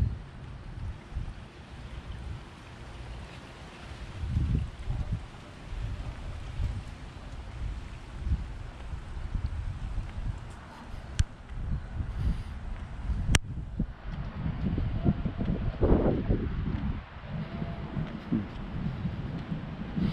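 Wind buffeting a handheld camera's microphone in uneven gusts, a low rumble that swells and fades. Two sharp clicks come about two seconds apart past the middle.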